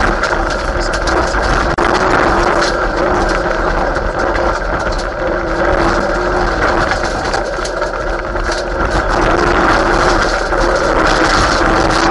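Mitsubishi Lancer Evolution VII Group A rally car's turbocharged four-cylinder engine running hard at speed on a gravel stage, heard from inside the cabin, its pitch shifting a little with the throttle. Tyre and gravel noise runs under it, with scattered ticks of stones.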